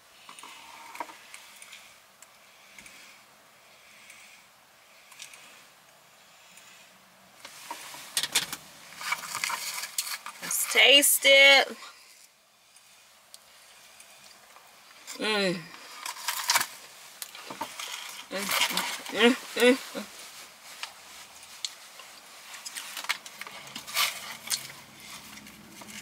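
A woman eating a frosted sugar cookie in a car: light rustling and clicks of handling the cookie and its paper, with loud wordless voiced "mm" sounds of enjoyment about eleven seconds in, a falling "mmm" near fifteen seconds and more around nineteen seconds. The first several seconds are quiet.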